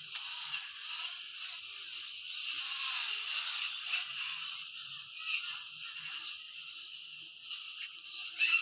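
A steady, harsh, noisy jumble with no clear voice or tune: many video soundtracks playing over one another at once.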